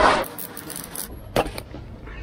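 Rustling of a fabric bag and small plastic scrapes and ticks as a cable tie is pushed through the cloth, with one sharp click about a second and a half in.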